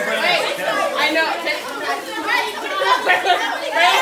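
Chatter of several young people talking over one another, no single voice clear.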